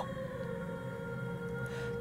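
Background music: a steady droning pad of several held tones.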